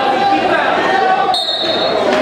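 Crowd chatter in a gym, with a short, high referee's whistle blast about one and a half seconds in, signalling the wrestlers to start from the neutral position.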